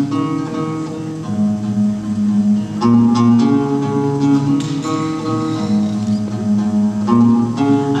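Acoustic guitar playing alone, picked chords ringing out, with a new chord struck every second or two.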